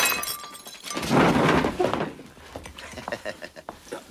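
A drinking glass breaking: a sharp crash with bright tinkling of shards lasting under a second. A louder rush of noise follows about a second in, then a few small clicks.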